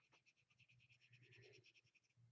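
Near silence: faint room tone with a low hum and a faint, even ticking of about a dozen ticks a second.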